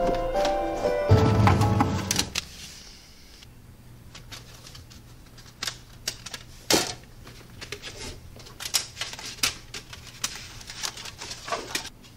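Background music with held notes that stops about two seconds in. After it come irregular small clicks and taps of a clear plastic disc case being handled.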